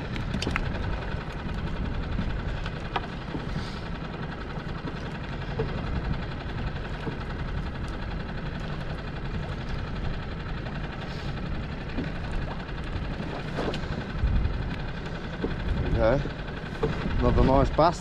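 Wind buffeting the microphone: a steady low rumble, with a short stretch of a person's voice near the end.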